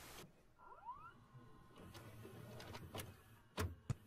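Faint mechanism of a DVD player: a short rising whine about a second in, then a few sharp clicks near the end.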